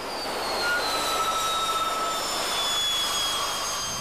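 Jet aircraft engine noise: a steady rush with a high turbine whine that falls slowly in pitch over a few seconds.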